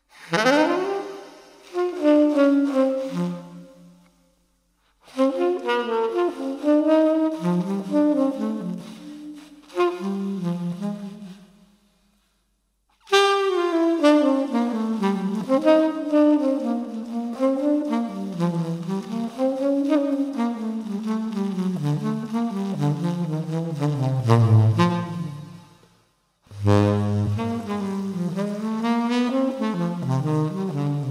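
Unaccompanied tenor saxophone playing a jazz melody in phrases, the notes reaching down low near the end. It falls fully silent three times between phrases.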